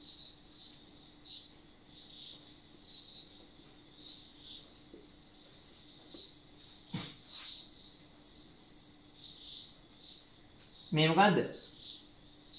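Faint crickets chirping in short, irregular high-pitched bursts over a steady background hum, with a single soft knock about seven seconds in.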